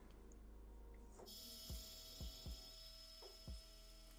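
Near silence with a steady faint electrical hum, and from about halfway through several soft, quiet taps of a felt-tip marker on paper as it fills in small shapes.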